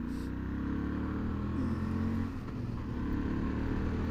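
Honda Varadero 1000 XL's V-twin engine running steadily as the motorcycle rides along, its pitch shifting slightly around the middle.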